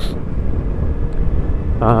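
Wind buffeting the microphone and road rumble while riding a Yamaha XJ6 Diversion F, its 600 cc inline-four engine a faint steady drone underneath.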